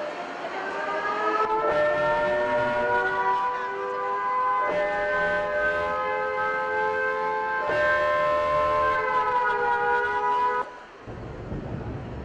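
Air-raid siren sound effect: several tones glide upward and then hold, starting afresh about every three seconds. It cuts off suddenly shortly before the end.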